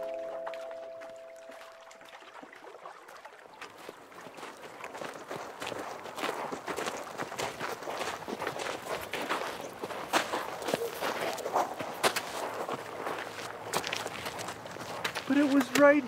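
Background music fades out, then footsteps of two people walking on the shore come in as a dense run of irregular crunches that grow louder.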